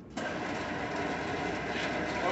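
Steady mechanical running noise of machinery, starting suddenly just after the start and holding at an even level.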